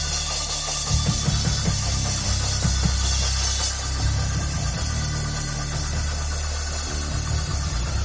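Live church band music in a pause of speech: heavy sustained bass notes with a bright cymbal wash over the first few seconds.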